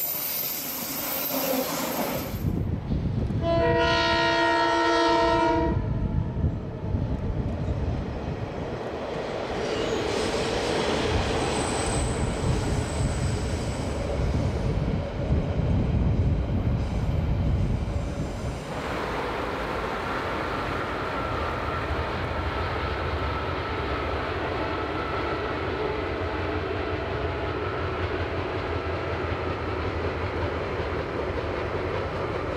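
Passenger train passing close, its carriages rumbling on the rails. A few seconds in, a diesel locomotive's horn sounds one multi-note chord for about two seconds, and the train runs on. About two-thirds of the way through, the sound changes to a steadier rumble of a freight train crossing a bridge.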